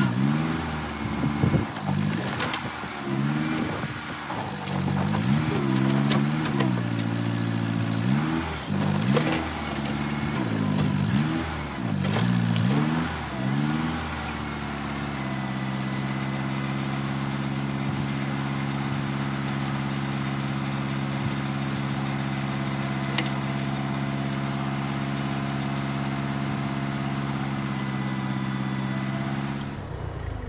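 Farm tractor's engine revving up and down over and over as the front-end loader lifts logs, with a few sharp knocks. About halfway through it settles to a steady idle.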